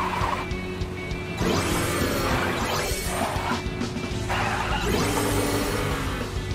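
Video game background music, with several crash-like sound effects from the cartoon fire truck as it drives and smashes through roadside obstacles.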